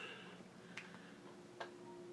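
Near silence with two faint clicks about a second apart.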